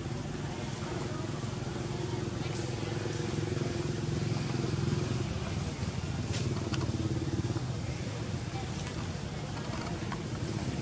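An engine running steadily, getting a little louder toward the middle and easing off in the second half, with a few faint clicks.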